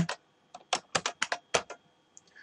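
Computer keyboard typing: a quick run of about ten keystrokes starting about half a second in, stopping shortly before the end.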